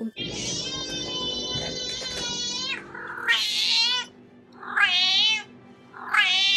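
A domestic cat meowing. One long, drawn-out meow lasts about two and a half seconds, followed by three shorter meows that waver in pitch.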